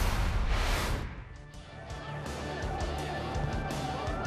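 Background music with a steady low beat, opened by a loud whoosh sound effect under a graphic transition wipe in the first second; the music then dips briefly and carries on.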